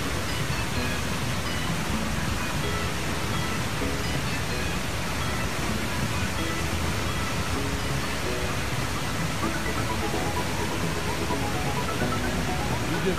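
Steady rushing noise of a waterfall pouring down onto the road, with faint music notes underneath.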